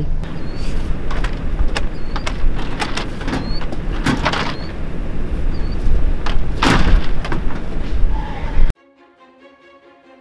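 Wind rumbling on the microphone with a run of knocks and rattles as a louvered barn-fan shutter is handled and leaned against the barn wall; the loudest knock comes about six to seven seconds in. Near the end it all cuts off suddenly, leaving quiet background music.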